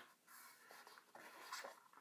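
Faint rubbing and scratching of fingers on a leather sneaker as it is held and turned in the hands.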